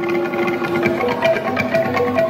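Txalaparta played by two players, each striking long wooden planks on trestles with a pair of upright wooden sticks: a fast, even run of wooden knocks with short ringing pitches, the two players' strokes interlocking.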